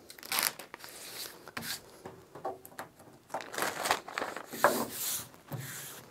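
Hands rubbing and sliding application tape, with vinyl lettering under it, across a wetted vinyl magnet sheet to position it, giving a dry rustle in irregular strokes.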